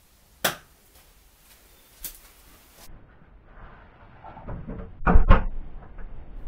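A door being handled and pulled shut: a sharp click soon after the start and a fainter one about two seconds in, then rustling that builds into two heavy thumps about five seconds in as the door closes.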